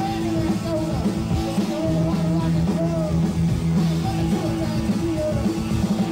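Punk rock band playing live: bass and drums drive a steady low drone while a short sliding melody line repeats about once a second.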